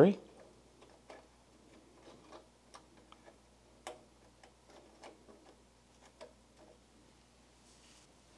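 Faint, irregular small clicks and scrapes of a CR2032 coin-cell battery being pushed and seated into its holder on a synthesizer's circuit board, the sharpest click about four seconds in.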